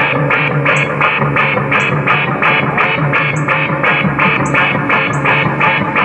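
Live electronic music played on synthesizers: a repeating pulsed pattern of about three notes a second over a steady low drone, with a high tick on every other pulse.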